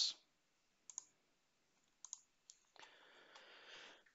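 A few faint computer mouse clicks: a pair about a second in and two more around two seconds in, followed by a soft hiss near the end.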